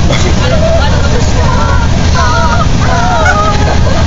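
Several girls singing together inside a moving school bus, their voices carried over the steady low rumble of the bus's engine and road noise.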